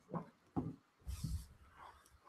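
A chair being moved and sat in at a table: three short knocks and rubs as someone settles into the seat.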